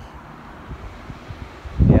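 Wind noise on a handheld phone's microphone, a low even rumble outdoors. A man's voice comes in near the end.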